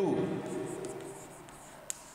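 Chalk writing on a chalkboard: faint scratching and tapping strokes, with one sharp chalk tap near the end.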